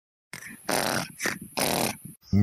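Rasping snores from a cartoon character asleep in bed, three noisy snorts in quick succession.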